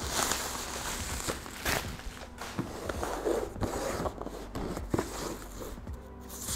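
Black plastic wrapping being torn and pulled off a box: irregular crinkling, rustling and sharp crackles.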